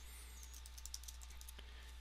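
Faint computer keyboard clicks: a run of light, quick keystrokes over a low steady hum.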